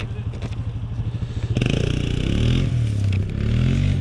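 A vehicle engine runs close by with a low, fast pulse. About a second and a half in it gets louder, and its pitch rises and falls as it is revved.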